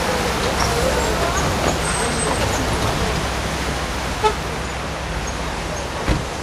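A car driving up the street and slowing to a stop, over steady street noise.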